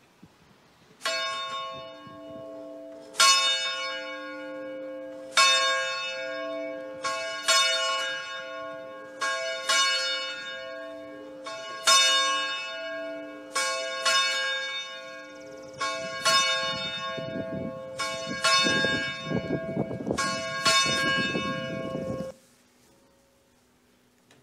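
A single church bell ringing, over a dozen strokes at uneven intervals of one to two seconds, each stroke left to ring on. The ringing cuts off suddenly near the end.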